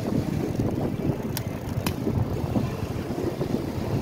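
Wind buffeting the microphone of a camera carried on a moving bicycle: a steady low rumble. About a second and a half in come two short clicks close together.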